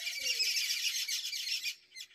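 Birds chirping rapidly, many short high calls overlapping in a busy chatter that stops shortly before the end.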